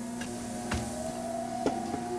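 A steady mechanical-sounding hum with a slowly rising upper tone and two light clicks, about three quarters of a second and a second and a half in. It is the reveal effect of the studio's exhibit platform as it brings up a prop.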